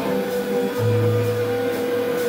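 A live rock band playing through amplifiers: electric guitar notes held over a low bass note that comes in about a second in.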